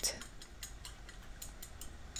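Metal chopsticks clinking against the inside of a ceramic bowl while stirring a thin sauce: light, quick clicks, several a second.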